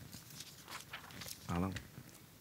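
A pause in a man's talk: faint scattered clicks and rustling close to his microphone, then one short voiced syllable from him about one and a half seconds in.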